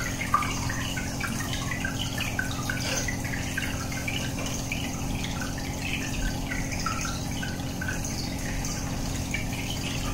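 Aquarium air bubbles rising and breaking at the water surface: a rapid, irregular patter of small bubbling pops and drips, over a steady low hum.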